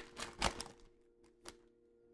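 Foil trading-card pack wrapper crinkling and crackling as it is torn open and the cards are pulled out: a run of sharp crackles in the first second, the loudest about half a second in, then one lone click.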